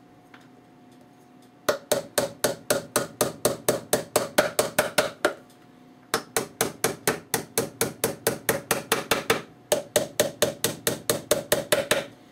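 Hammer tapping small nails into the sides of a glued wooden box: quick, light, evenly spaced strikes, about five or six a second, in three runs with short pauses between.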